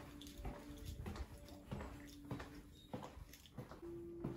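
Footsteps on a tiled floor, a little under two steps a second, over faint steady held tones.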